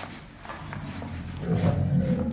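Opening of a hip-hop track recording before the vocals: a low, rumbling sound with faint clicks that swells about one and a half seconds in.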